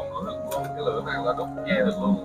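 Soft background music of steady sustained tones, with a man's voice speaking briefly over it.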